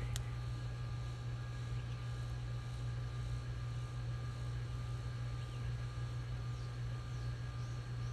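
A steady low hum, with one sharp click just after the start.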